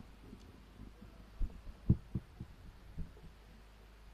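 A handful of short, dull low thumps, the loudest about two seconds in, over a steady low hum from the sound system.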